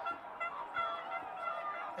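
Faint music: a run of short held notes, moderately quiet under the ground's background noise.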